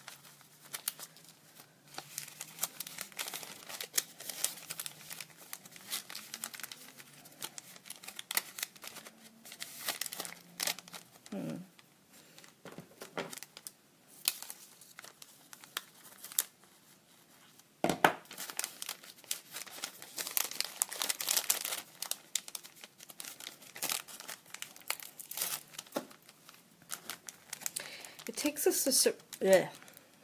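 Clear cellophane bag crinkling in the hands as an earring backing card is pushed into it, in irregular crackly bursts with a quieter spell in the middle. A sharper crackle comes about eighteen seconds in.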